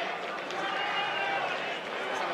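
Stadium sound of several voices shouting and calling over crowd noise as a goal goes in, with a brief sharp knock about half a second in.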